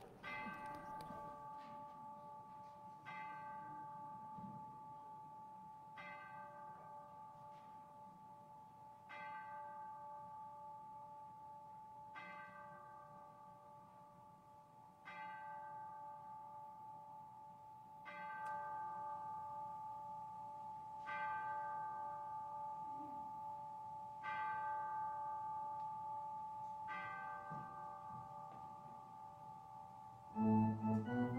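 A bell chiming the hour: about ten slow strikes, roughly three seconds apart, each ringing on into the next.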